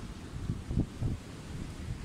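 Wind buffeting the microphone: an uneven, gusty low rumble.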